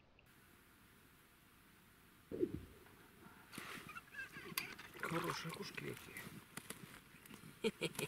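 Low voices with a few sharp clicks, after a single short low sound falling in pitch about two seconds in.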